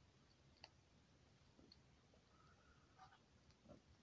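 Near silence, broken by a few faint, short clicks as a baby striped skunk nibbles and tries to crunch hard kibble pellets.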